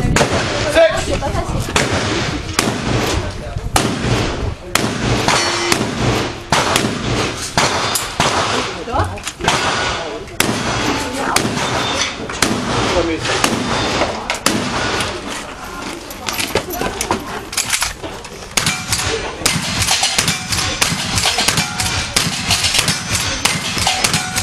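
A long string of revolver shots, one every half second to a second, each a sharp crack, as a shooter works through a stage of steel targets.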